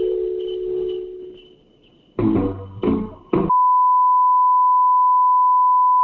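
Guitar music over a phone line, its last held note dying away, then two short loud bursts of sound. A steady high censor bleep follows, one unbroken tone for about two and a half seconds that stops at the very end.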